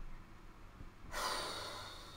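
A person's sharp breath out, starting suddenly about a second in and trailing away.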